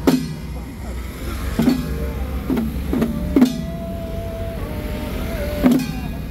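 Hand-held octagonal frame drums on wooden handles struck with sticks for a xiaofa ritual: about six irregular beats, each a sharp hit with a low ring, the loudest near the start, about three and a half seconds in, and near the end. In the middle, a single voice holds one long chanted note.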